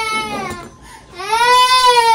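A young child crying: one long wail fading out just after the start, then after a short break a second long wail that rises and is held.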